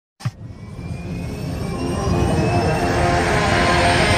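Intro sound effect: a short hit just after the start, then a jet-like swell that rises steadily in loudness, building towards the music.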